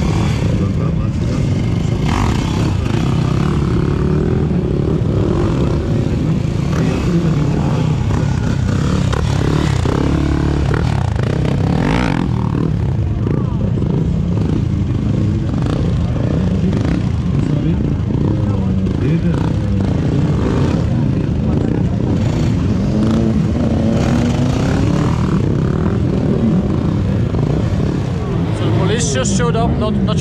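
Motorcycle engines running and revving during stunt riding, the pitch rising now and then as the throttle opens, with voices mixed in.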